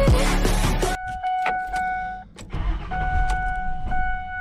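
Intro music cuts off about a second in. It is followed by a steady electronic warning tone from the car's dashboard, which stops briefly and comes back, with several sharp clicks of keys being handled at the ignition.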